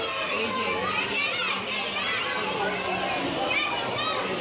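Many children shouting and calling out while playing in a swimming pool, their high voices overlapping continuously.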